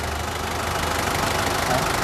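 Nissan 2-tonne forklift engine idling steadily with a low, even hum, running smoothly with no abnormal knocking.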